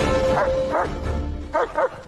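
Film score music with huskies yipping several times over it; the music fades out near the end.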